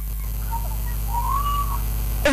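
Steady low electrical hum, with a faint whistle-like tone that rises and falls about halfway through.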